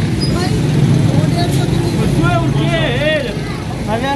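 Busy market ambience: voices talking over a steady low rumble.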